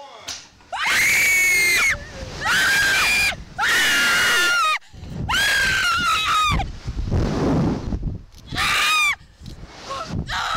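Two women screaming on a Slingshot reverse-bungee ride as it launches and flips them: about five long, high-pitched screams with short gaps between them.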